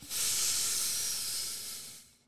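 A long breathy hiss that starts suddenly and fades away over about two seconds.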